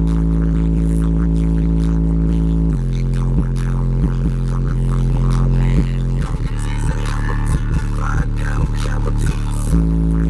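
Bass-heavy music played loud through a car stereo driving two 12-inch subwoofers in the back, heard inside the car's cabin. Long, deep held bass notes dominate and shift to a new note roughly every three seconds.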